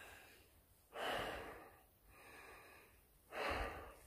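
A man breathing hard while hiking uphill: three heavy, noisy breaths about a second apart, the first and last the loudest.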